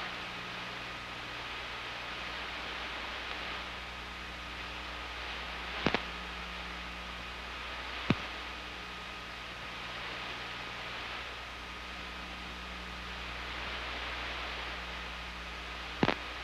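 Steady hiss and low hum of an old transmission or tape audio channel, with no voice on it. Two sharp clicks break through, about six and eight seconds in.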